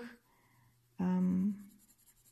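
A woman's voice makes one short voiced sound about a second in, a brief wordless syllable between sentences. Around it, coloured pencil strokes on paper are faint.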